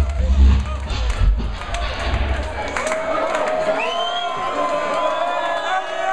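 Bass-heavy drum and bass playing over a club sound system, cutting out about halfway through; the crowd then cheers and shouts.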